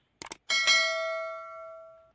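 Subscribe-button sound effect: a quick double mouse click, then a bell ding about half a second in that rings on and fades away over about a second and a half.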